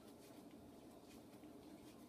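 Near silence: room tone, with faint soft rustles and ticks of paper game cards being drawn from a deck.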